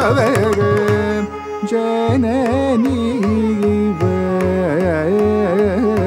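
Carnatic vocal singing with the pitch gliding and ornamented throughout, accompanied by violin, with low mridangam strokes joining in about two seconds in.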